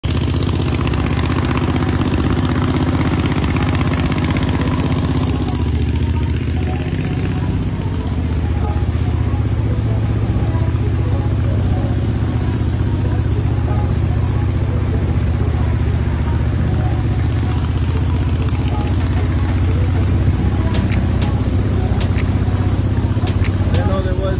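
Harbor Freight Predator 670 V-twin gas engine driving a Mud-Skipper longtail mud motor, running steadily as it pushes a small boat along.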